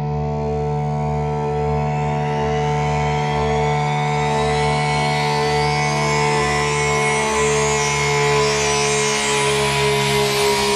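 Dark electronic music intro: sustained synthesizer drone notes under a rising sweep that gradually brightens, building up to a dubstep track.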